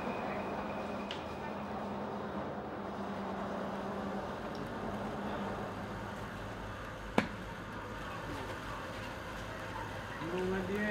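Pottery workshop room sound: a steady low hum under a noisy background, with a single sharp click about seven seconds in.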